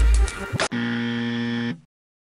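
Bass-heavy background music breaks off under a second in, and a steady, low buzzer tone sounds for about a second before stopping abruptly.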